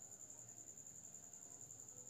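Near silence: room tone with one faint, steady high-pitched whine.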